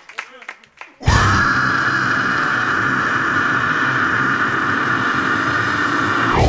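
Live hardcore band on stage: about a second in, a loud, harsh sustained blast of distorted sound starts suddenly over uneven low pulses, holds for about five seconds and falls away in pitch at the end.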